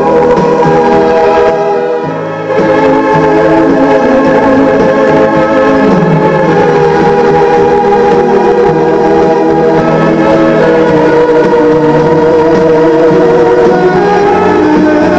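Music playing from a cassette in a Lasonic TRC-931 boombox. The sound dips briefly about two seconds in, then the music carries on steadily.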